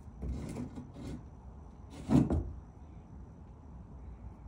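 A horse's hooves stepping across a wooden barn stall, giving a few hollow knocks on wood, the loudest about two seconds in.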